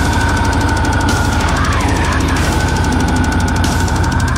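Extreme metal track with very fast, machine-like double-kick or blast-beat drumming under distorted guitars and a held high note that bends briefly near the middle.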